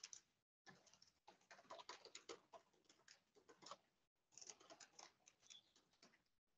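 Fast typing on a computer keyboard: a faint, irregular run of key clicks with a couple of brief pauses.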